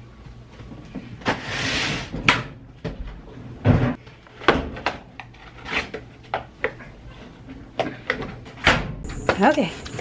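Laundry being moved by hand at a washer and dryer: a string of knocks and clunks from the machines' lids and doors, with a rustle of cloth about a second in. A short pitched sound is heard near the end.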